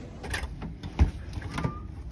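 A few clicks and knocks, the loudest about a second in, as the key-card lock and lever handle of a cruise-ship cabin door are worked, with a brief faint beep near the end.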